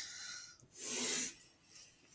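Pencil drawing lines on paper: two strokes, the first at the start and the second about a second in, each lasting about half a second.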